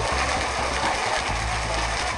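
Background music over a steady, even wash of crowd noise from a large seated audience in a hall.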